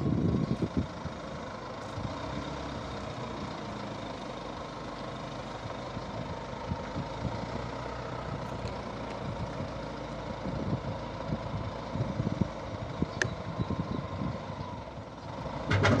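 Caterpillar wheel loader's diesel engine running steadily, with a few irregular knocks in the last few seconds.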